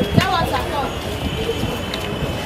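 Busy street noise among parked buses: a steady rumble of traffic with voices in the crowd, a sharp knock just after the start, and a thin steady high whine from about halfway through.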